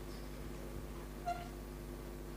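Low, steady electrical hum and room tone through the hall's sound system, with one faint short blip a little over a second in.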